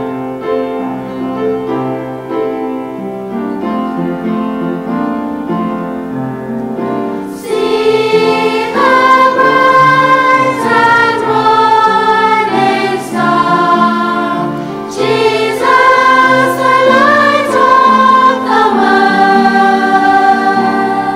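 A choir sings with keyboard accompaniment. The keyboard chords play softly alone at first, and the voices come in, much louder, about seven seconds in.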